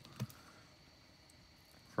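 One short, soft click a moment after the start, then quiet room tone.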